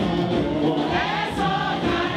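Gospel praise-and-worship music: a choir singing with musical backing, at a steady, loud level.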